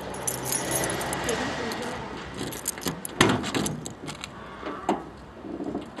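A ring of car keys jangling at the trunk lock, with scattered clicks and one sharp clunk about three seconds in.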